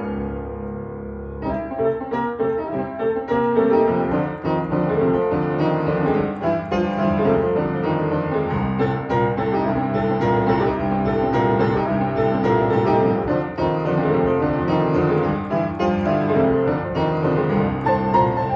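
Hopkinson upright piano being played: a held chord dies away over the first second and a half, then continuous chords and melody. It is an old, beginner-grade upright.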